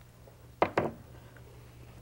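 Two quick scissor snips about two-thirds of a second in, cutting apart chain-sewn quilt pieces, over a low steady hum.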